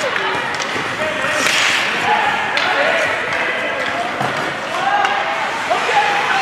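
Ice hockey play in an echoing rink: sharp clacks of sticks on the puck and a hissing skate scrape about a second and a half in, over indistinct shouting voices of players and spectators.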